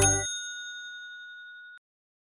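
Bright bell-like ding sound effect ending a cartoon-style outro jingle: the backing music stops just after it, and the ding rings on alone, fading, until it cuts off shortly before the end.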